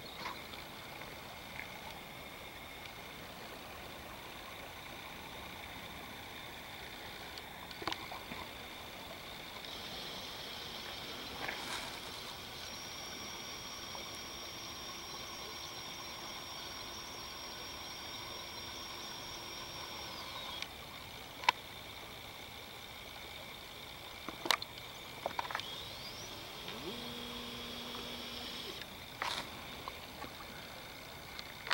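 Quiet outdoor ambience: a faint steady hiss with a few sharp clicks scattered through it.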